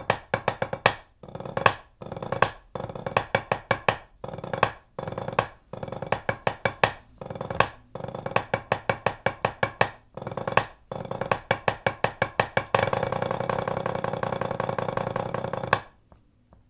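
Rudimental snare drum solo played with white hickory parade sticks on a rubber practice pad: fast groups of sharp strokes, separated by brief gaps. Near the end comes a continuous roll of about three seconds that stops abruptly.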